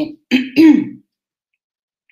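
A woman clears her throat once, briefly, about half a second in.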